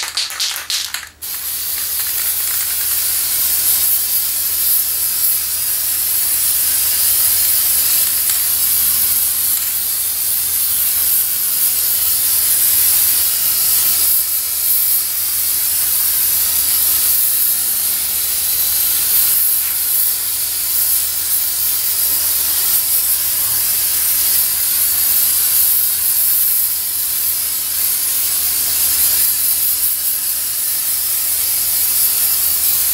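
Aerosol spray paint can: a quick run of rattles as it is shaken for about the first second, then a long continuous spray hiss as black paint is misted out, wavering a little in strength.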